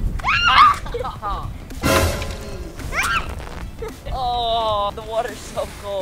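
A water balloon bursts against a swung toy bat with a sharp splat about two seconds in, among children's high-pitched squeals and shouts.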